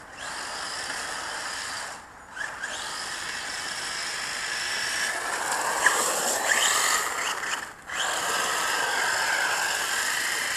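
Electric motor of a radio-controlled truck whining up and down in pitch as it is throttled around, with a hiss of tyres on wet asphalt. The sound drops out briefly twice, about two seconds in and near the eight-second mark, as the throttle is let off.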